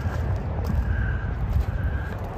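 Low, fluctuating outdoor rumble with a faint steady high tone underneath and a few faint clicks.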